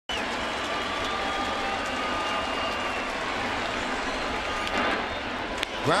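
Steady ballpark crowd noise from a large stadium audience, with a sharp crack of the bat meeting the ball near the end as a ground ball is hit.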